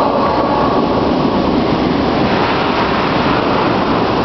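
Hot tub jets running, a steady loud rush of churning, bubbling water.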